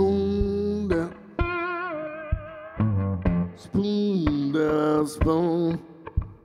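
Resonator guitar played bottleneck-style with a glass slide: a blues slide passage of plucked notes, some held with a wavering vibrato and one sliding down in pitch about four seconds in.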